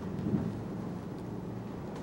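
Low, steady room rumble with a faint electrical hum, and a soft bump about a third of a second in.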